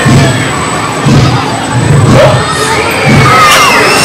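Children on a small tower ride screaming and shouting as the seats rise and drop, with sharp high-pitched shrieks near the end. Underneath runs a low pulsing about once a second.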